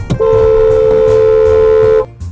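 Car horn sounded in one long steady blast of nearly two seconds, starting a moment in and cutting off sharply, its two close notes blending into one blare.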